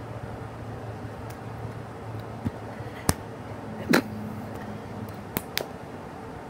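A few sharp clicks or knocks over a steady low hum, the loudest about three and four seconds in and two smaller ones near the end.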